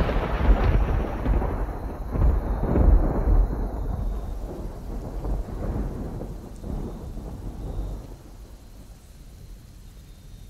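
Rolling thunder with rain: deep rumbling peals that swell a few times in the first three seconds, then slowly die away under the hiss of rain.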